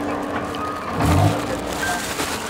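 Vehicle noise with a steady low hum, heard from inside a car through its open window, with a low thud about a second in.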